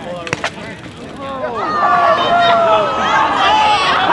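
A group of spectators' voices rises into cheers and long drawn-out 'whoa' calls as a water bottle rocket launches, starting about a second in. A couple of sharp clicks come just before, under half a second in.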